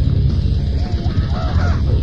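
Grindcore band playing a dense, loud wall of low-heavy sound. About a second in, a short high wavering shriek bends up and down over it for under a second.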